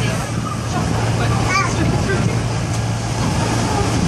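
Diesel train moving slowly along a station platform, heard from on board: a steady low engine hum over rumbling wheel and track noise.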